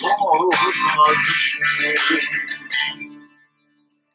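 Man singing in Turkish to a strummed acoustic guitar, the song ending about three seconds in as the last chord fades out.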